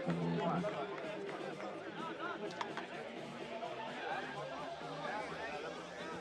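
Indistinct chatter of spectators and players around an outdoor beach soccer pitch, with a brief click about two and a half seconds in.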